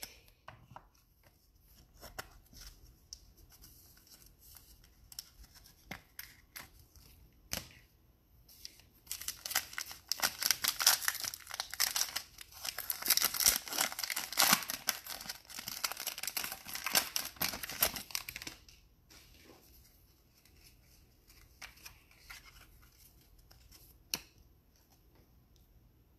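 Foil wrapper of a Prizm football card pack being torn open and crinkled by hand: faint rustling at first, then a dense crackle of the foil for about ten seconds in the middle, then faint handling of the cards.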